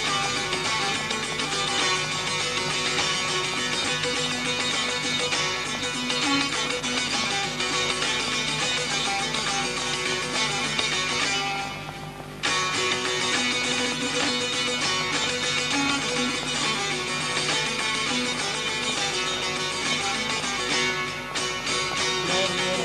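Kurdish tanbur, a long-necked fretted lute, played with rapid right-hand finger strumming in a dense, continuous flow of ringing notes. The playing drops away briefly about halfway through, then comes back in at full strength.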